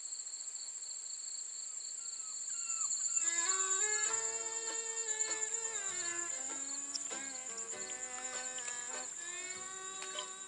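A steady, high insect chorus, joined about three seconds in by music with held notes at several pitches that becomes louder than the insects.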